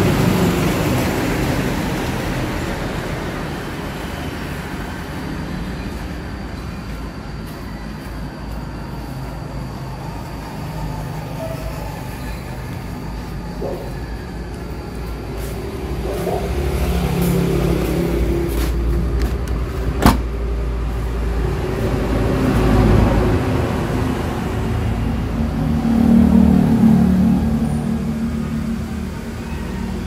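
Road traffic noise: a steady low rumble that swells several times as vehicles go by, with one sharp click about twenty seconds in.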